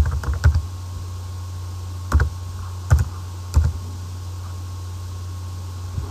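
Computer keyboard typing a short word: a quick run of keystrokes at the start, then three single keys a little over half a second apart, over a steady low hum.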